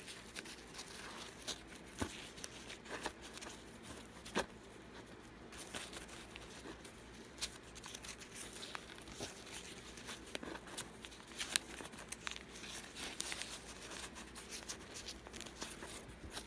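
Newspaper flower petals being scrunched and crimped by hand: an irregular run of small paper crackles and rustles.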